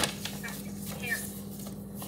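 Folded sheet of paper being opened out and handled: a sharp crackle at the start, then a few light rustles, over a steady low hum.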